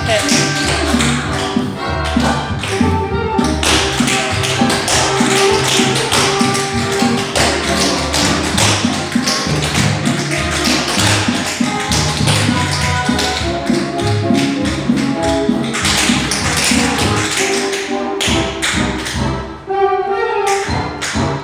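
Two tap dancers' shoes striking a studio floor in fast, rhythmic patterns of steps, over recorded music with a steady beat.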